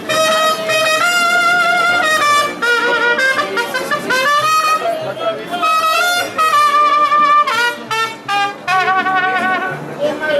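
Mariachi band playing, with trumpets carrying the tune in long held notes that step from pitch to pitch.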